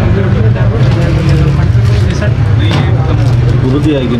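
Indistinct voices of people talking in a shop, over a steady low rumble.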